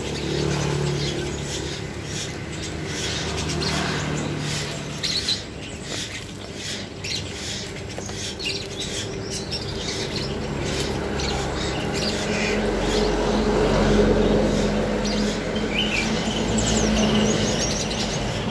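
Sunbirds giving short high chirps inside a plastic-mesh box while a hand rummages among them, with rustling and light knocks against the mesh. A low steady hum runs underneath.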